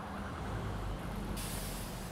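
Steady low rumble of street traffic, with a short burst of hiss about one and a half seconds in that stops about half a second later.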